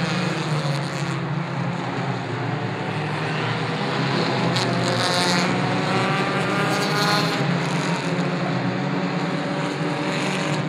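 A field of Pure 4 four-cylinder compact race cars running laps together, a steady engine drone. In the middle a rising engine note stands out over the pack as the loudest part.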